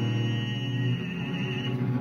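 Small string orchestra of cellos and violins playing a slow, sustained passage, with a tenor's held note above it. The low chord changes about a second in, and the voice fades shortly before the end.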